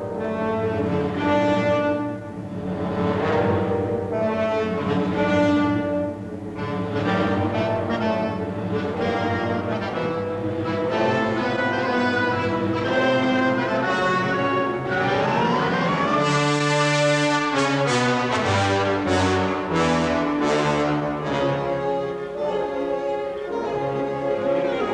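Orchestral film music led by brass. About fifteen seconds in, a rising glide leads into a fuller passage.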